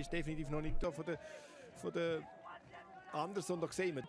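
A man's voice talking faintly, well below the level of the surrounding commentary.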